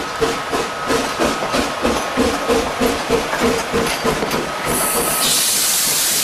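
Steam locomotive working, its exhaust chuffing in quick regular beats, about four a second, as it moves its train of coaches. Near the end a loud rush of hissing steam takes over.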